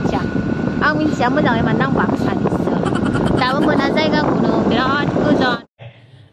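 A voice over the steady rumble of a moving vehicle, cutting off abruptly shortly before the end.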